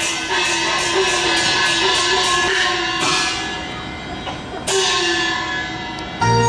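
Chinese traditional orchestra music accompanying opera: held instrumental tones over a fast run of percussion strokes that stops about three seconds in, with another sharp stroke near five seconds.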